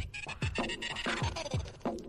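Intro music built on DJ turntable scratching: a run of short scratches that each sweep downward in pitch, about three a second.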